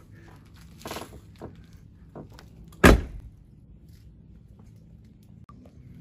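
Ford Excursion's rear side door swung shut with one loud slam about three seconds in, after a few faint knocks; the door closes fully.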